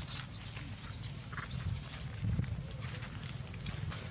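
Macaques calling with short, high-pitched squeaks in the first second, over soft rustling as they move across dry leaves on the ground.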